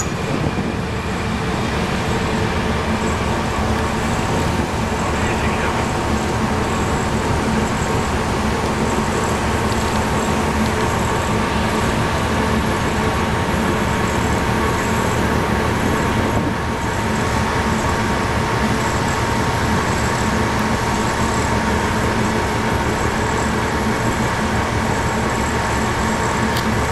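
Steady drone of ship engines, with a constant hum running through it, as a harbour tug works close alongside a large ship.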